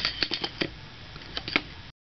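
Bamboo-handled calligraphy brushes clicking lightly against one another and the table as they are handled and laid down: a quick run of small clicks, then two more near the end.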